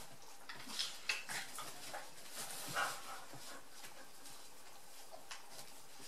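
Two dogs play-wrestling on a blanket: short bursts of mouthing and scuffling, the loudest about a second in and near three seconds.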